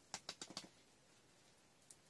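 Faint handling sounds of hands working potting soil around a succulent in a plastic pot: a quick run of soft clicks and rustles in the first second, and one more click near the end.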